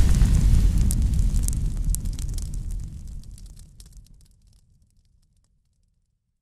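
Logo-intro sound effect of fire and an explosion: the tail of a deep boom decays as a low rumble with scattered crackles and fades out about four seconds in.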